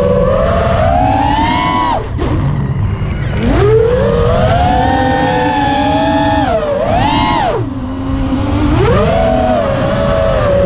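A quadcopter's four RaceDayQuads 2205 2450kv brushless motors and propellers whining, their pitch rising and falling with the throttle. The pitch drops sharply about two seconds in and climbs again a second later, then dips, spikes and falls low near eight seconds before rising again. A low rushing noise runs beneath.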